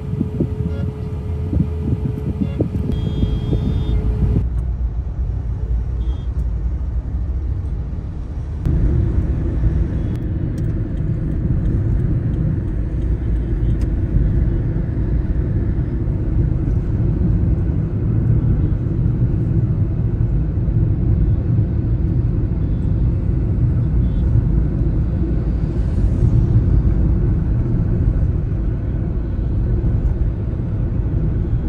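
Steady low road and engine rumble of a car driving in city traffic, heard from inside the cabin. The sound changes abruptly about four seconds in, then grows louder and stays steady from about nine seconds in.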